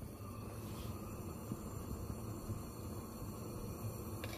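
A steady low hum with faint room noise and no distinct events.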